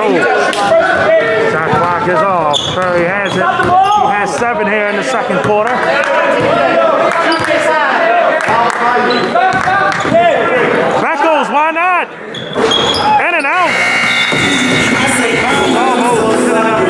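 Basketball dribbling on a hardwood gym floor, with sneakers squeaking and players calling out, echoing in a large gym.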